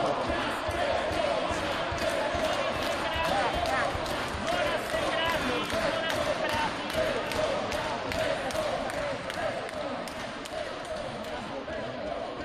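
Hubbub of many people talking at once in the chamber, with frequent sharp knocks scattered through it.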